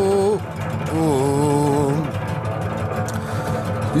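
Voices singing a slow Greek folk melody in long held notes over a steady sung drone, in the manner of Greek polyphonic song. The upper melody bends about a second in and breaks off about two seconds in, leaving the drone under some faint clicks.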